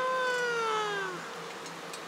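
A child's voice holding one long vocal note that slides up at the start, holds, then drops in pitch and stops about a second in.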